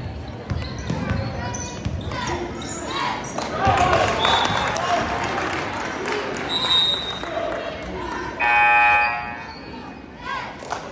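Basketball dribbling and bouncing on a hardwood gym floor, with overlapping spectator voices and a couple of brief sneaker squeaks in a reverberant hall. Near the end, a loud steady electronic buzzer, typical of a gym scoreboard horn, sounds for about a second.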